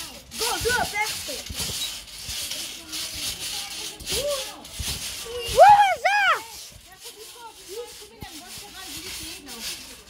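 Children's voices: unclear calls and chatter, with a loud two-part cry about six seconds in.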